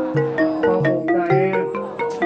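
Music led by a xylophone-like mallet instrument playing a quick run of struck notes. A wavering tone joins briefly in the second half.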